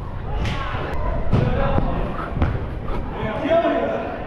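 About four sharp, echoing thuds of a football being struck and players moving on artificial turf in a large indoor hall, with indistinct shouting from players near the end.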